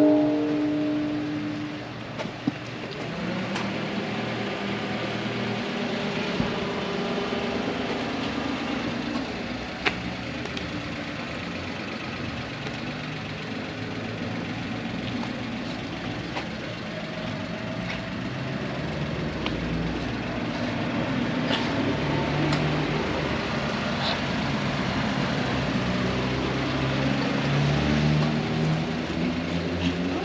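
Street ambience dominated by a vehicle engine idling and running nearby, its low hum rising and falling, with a few small clicks. A ringing tone fades away in the first second or two.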